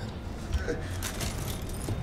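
Steady low rumble of a moving train carriage, with a few light clinks and rattles scattered through it.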